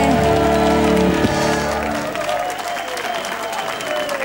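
A live band plays the final sustained chord of a song, the bass and low notes cutting off about halfway through, as a studio audience applauds.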